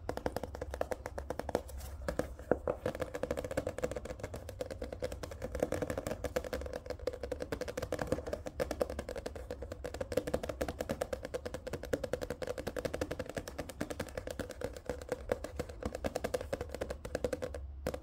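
Fingertips and nails tapping quickly on a paperback book, on its page edges and its card cover: a fast, continuous run of small taps.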